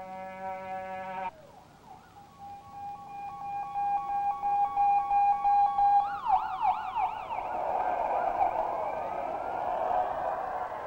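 A sustained, horn-like chord cuts off suddenly about a second in. Then a siren sounds, a steady tone growing louder, which from about six seconds breaks into fast rising-and-falling yelp sweeps, with several sirens overlapping toward the end.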